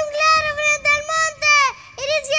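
A young boy reciting a gaucho glosa in a high, sing-song chanting voice: each phrase is held on a level pitch and falls away at its end.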